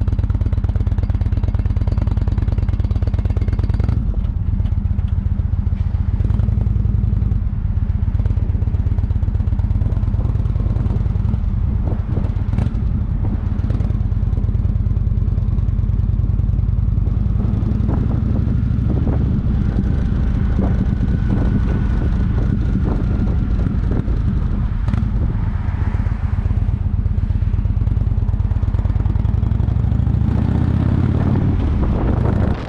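Motorcycle engine running as the bike pulls away and rides along the road, a steady low engine note with a few sharp knocks along the way.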